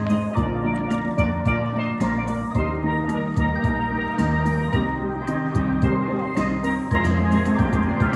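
Steel drum band playing an instrumental passage: ringing steel pans carrying the melody over low bass-pan notes, with a steady beat of evenly spaced strikes.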